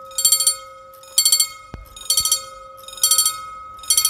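EFACEC mechanical level-crossing bells ringing in short bursts about once a second: the crossing's warning that a train is approaching.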